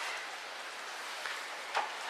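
Steady faint hiss of background room tone, with no distinct events.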